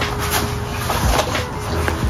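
Black nylon plate-carrier-style weighted vest being handled and lifted over the head: fabric and straps rustling and scraping in a run of short, irregular strokes.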